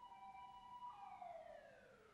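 Faint distant siren holding a steady pitch, then winding down in a falling glide from about a second in.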